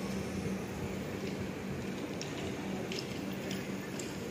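Passenger train of LHB coaches rolling slowly past on the adjacent track, a steady rumble with a constant low hum and a few light, sharp clicks.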